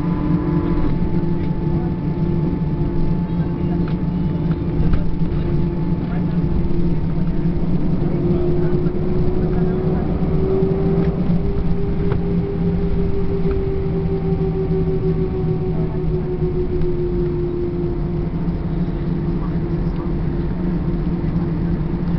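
Airbus A321-200 cabin noise while taxiing after landing: a steady jet-engine drone whose tone rises a little about eight seconds in and eases back down over the following several seconds.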